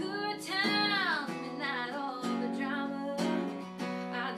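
A woman singing a country song, accompanying herself on a strummed acoustic guitar, with one long sung note that swells and bends downward about a second in.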